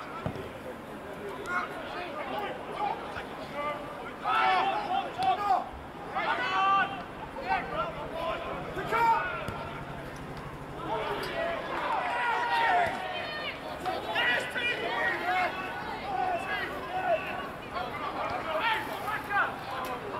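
Indistinct shouting from football players and spectators around the pitch, voices calling out in clusters over open-air background noise.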